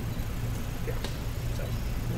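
A steady low hum, with a brief spoken word and a single click about a second in.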